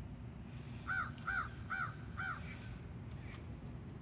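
A bird calling four times in quick succession, about two short rising-and-falling calls a second, starting about a second in, over steady low background noise.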